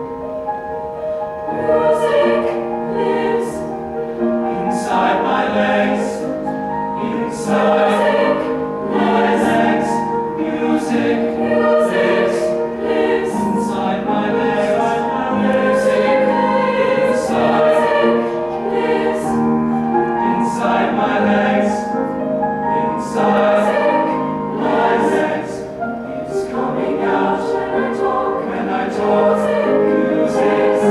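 Mixed youth choir singing with piano accompaniment; the voices come in about a second and a half in over the piano.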